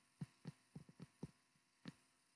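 Near silence broken by about eight faint, short taps of a stylus on a tablet screen as a fraction is written.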